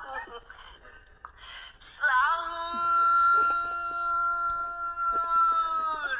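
A drawn-out, high wailing voice from a phone's speaker, a played-back sahur wake-up call. It starts about two seconds in and is held on one almost unchanging pitch for about four seconds, after a quieter opening with a few faint clicks.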